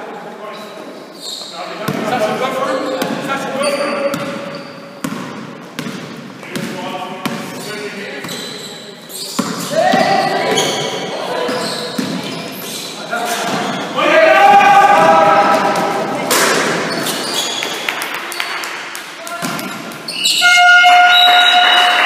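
A basketball bouncing on a wooden sports-hall floor during a game, with players' voices and the reverberation of a large hall. Near the end, a steady pitched tone comes in as play stops.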